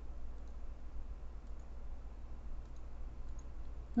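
A few faint computer mouse clicks, scattered and irregular, as a slider is set with the mouse. Under them runs a steady low hum.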